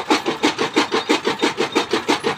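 Electric motor-driven chaff cutter running, its flywheel blades chopping green fodder in an even rhythm of about six strokes a second.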